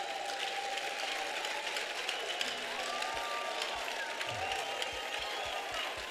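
Audience applauding steadily in a large hall, with a faint held musical tone underneath.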